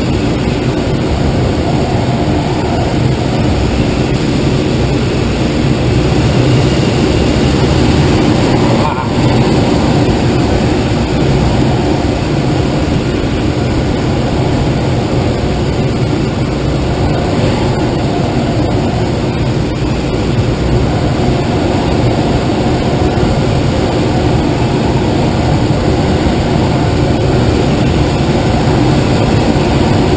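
Steady rush of air streaming over a glider's canopy in flight, heard from inside the cockpit, with one brief click about nine seconds in.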